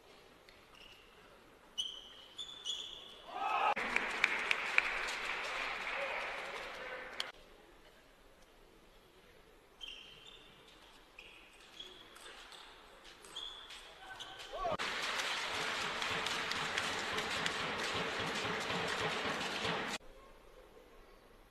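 Two table tennis rallies, the plastic ball clicking off bats and table, each ending in a shout and a burst of crowd cheering and applause lasting a few seconds; the second burst runs longer than the first.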